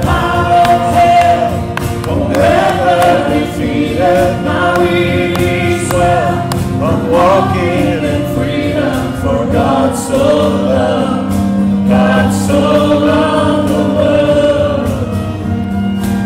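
Worship song performed live: several voices singing together over a band with acoustic guitar.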